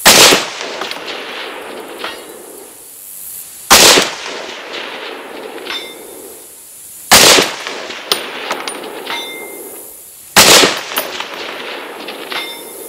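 Four shots from a Bear Creek Arsenal .308 AR-10 semi-automatic rifle, fired slowly about three and a half seconds apart, each report echoing off the range. About two seconds after each shot comes a faint metallic ring from the distant steel target being hit.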